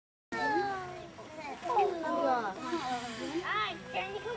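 Several children's voices talking and exclaiming over one another, with no single speaker clear. The chatter starts abruptly a moment in and includes a few high-pitched exclamations near the end.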